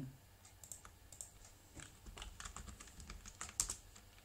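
Typing on a computer keyboard: a run of quick, light key clicks, with one louder keystroke near the end.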